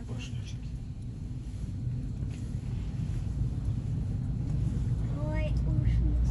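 Cab of a high-speed elevator descending: a steady low rumble that builds gradually louder as the car picks up the drop.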